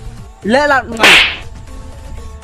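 A hand slapping a face: a short pitched cry rises and falls, then a loud, sharp slap crack comes just after a second in.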